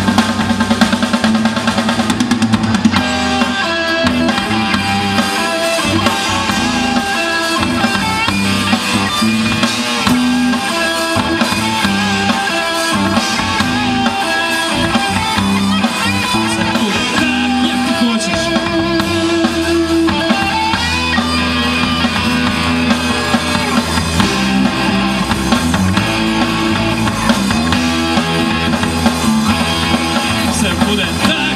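A rock band playing live, with electric guitars and a drum kit.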